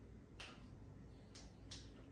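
Faint sharp clicks from a wrist being manipulated by hand: three short joint pops, one about half a second in and two close together near the end, in a quiet room.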